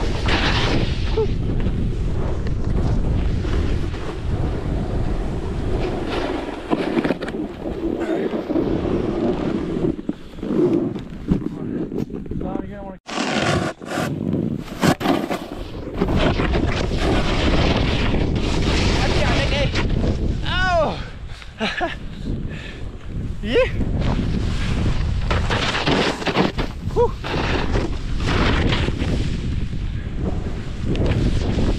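Wind buffeting an action camera's microphone and a snowboard hissing and scraping through powder snow during a downhill run. The sound drops out briefly about 13 seconds in, with a few sharp knocks just after, and a short voice call is heard about two-thirds of the way through.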